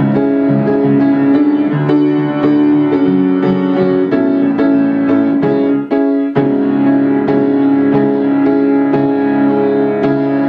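Solo piano playing a slow instrumental passage of chords and held notes, with a brief break about six seconds in.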